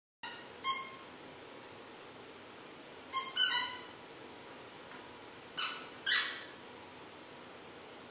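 A squeaky dog toy squeaking five times in short bursts: once early, then a quick pair about three seconds in, and another pair about six seconds in.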